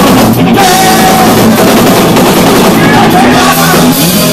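Korean punk rock band playing live: loud electric guitar and drum kit with a male vocalist singing into a handheld microphone.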